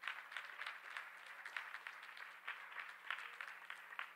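A congregation applauding, faint and even throughout.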